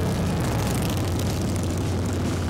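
Cruiser and touring motorcycles riding past, their engines giving a steady low sound.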